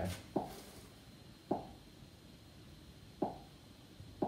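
Three light taps of a finger on an interactive touchscreen board, each a short hollow knock, spaced a second or more apart.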